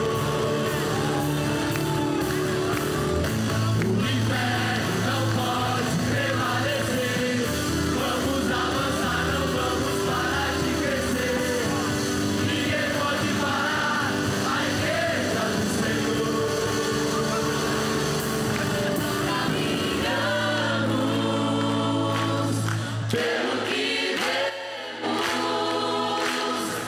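Large choir singing a gospel song with instrumental accompaniment. A few seconds before the end the bass drops out and the voices carry on almost alone.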